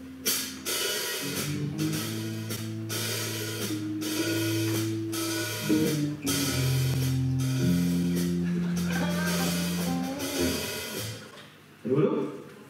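Live band playing: drum kit with cymbal hits over held bass and keyboard notes and electric guitar, dying away about ten seconds in.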